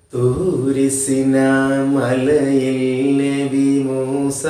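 A man chanting a recitation lesson in a drawn-out, sing-song voice, holding each note long. It starts just after a brief pause.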